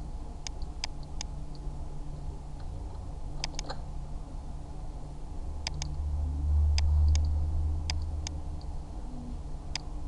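Computer mouse button clicks, about a dozen sharp clicks, several in quick pairs, as path points are placed and dragged. Under them runs a low hum that swells for a couple of seconds in the middle.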